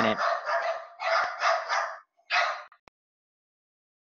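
Dogs barking and yipping in a quick run of barks for about two seconds, then one more bark. The sound cuts off suddenly with a click just before three seconds in.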